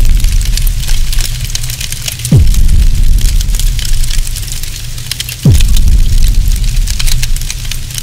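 Cinematic title-card sound effects: two deep booms about three seconds apart, each a quick falling pitch drop into a long fading rumble, over a steady fire-like crackle. It all cuts off suddenly at the end.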